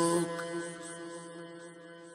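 A held, chant-like vocal drone under a recited Pashto poem, fading steadily away over about two seconds as the piece ends.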